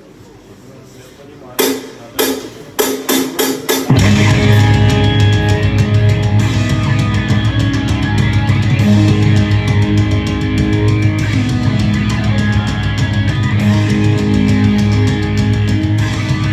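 Live heavy metal band launching into a song: a few separate sharp hits about one and a half seconds in, coming quicker, then about four seconds in distorted electric guitars and drums come in together, loud and steady to the end.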